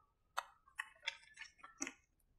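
A series of faint, light clicks and taps, about six in two seconds, as a paper sheet is slid into place and pressed by hand against a whiteboard.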